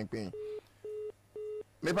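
Telephone line tone from the studio phone-in line: a steady pitched beep repeating about twice a second, heard as three short beeps between words, as a listener's call comes through.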